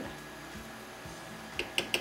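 A spoon clicking a few times against a small ceramic dish near the end, as brown sugar is scraped out of it into a pot of blackberries, over a faint steady hiss.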